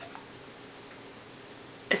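Quiet room tone with a faint click just after the start. A woman begins speaking at the very end.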